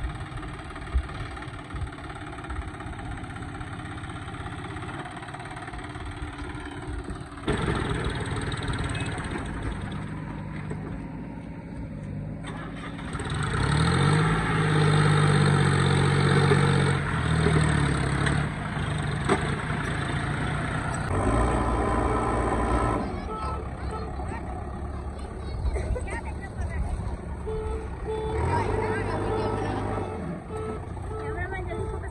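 John Deere tractor's diesel engine pulling a trailer loaded with mud, its note rising and loudest for a few seconds about halfway through as it pulls away, then running steadily under load.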